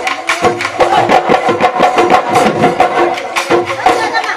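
Bihu dhol drums beaten by a husori troupe in a fast, dense rhythm of sharp strokes, with a held melody line sounding over them.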